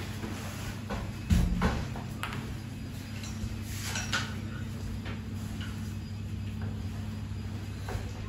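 A person shifting about on a bed and handling things: a few light knocks and rustles, the loudest a thump about a second in, over a steady low hum.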